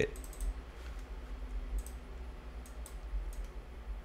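Computer mouse clicks: a quick cluster of light clicks at the start, then single clicks every half second or so, over a faint steady low hum.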